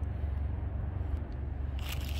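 A handheld phone being moved and handled, with a brief rustle near the end, over a steady low rumble.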